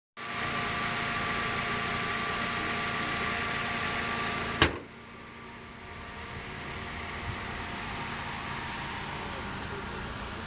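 2011 Toyota Vios 1.5's four-cylinder VVT-i petrol engine idling steadily with the bonnet open. About halfway through, one loud slam as the bonnet is shut, after which the idle is heard more quietly through the closed bonnet.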